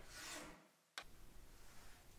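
Faint rasp of a flat hand file stroking a small metal piece held in a bench vise, which cuts out about half a second in; a click about a second in is followed by only a faint hiss.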